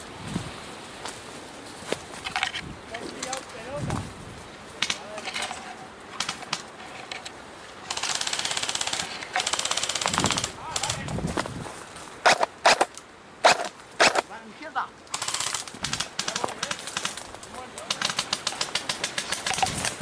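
Airsoft guns firing: two long bursts of rapid fire about eight and ten seconds in, several single sharp shots after them, and a fast string of shots near the end.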